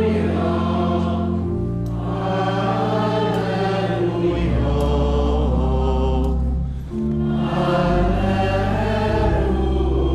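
A congregation or choir singing the acclamation before the Gospel, with organ accompaniment, in a church. The phrases are sung over long held low notes, with a brief pause about seven seconds in.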